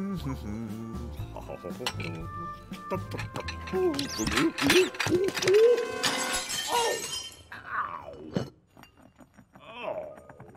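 Cartoon soundtrack of music and wordless vocal noises, with tableware clinking and then a loud shattering crash around the middle.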